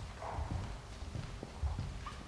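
Footsteps of several people marching across a hard sports-hall floor: irregular dull thuds with an occasional sharper knock.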